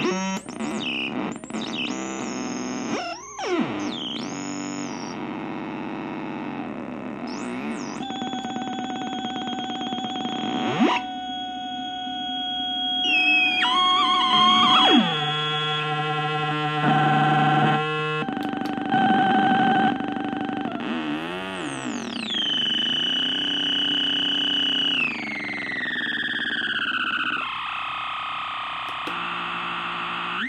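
A homemade logic-gate feedback oscillator putting out harsh electronic tones and noise as its knobs and switches are worked. The pitch jumps abruptly between steady buzzing and whistling notes, and it sweeps downward a few times in the second half.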